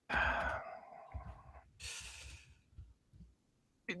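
A person sighing, a long noisy exhale close to the microphone, followed about two seconds in by a shorter, hissier breath.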